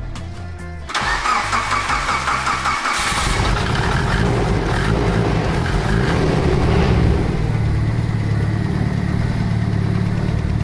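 About a second in, a Mitsubishi Lancer Evolution VIII's turbocharged four-cylinder engine starts up, runs unevenly for a couple of seconds, then settles into a steady idle.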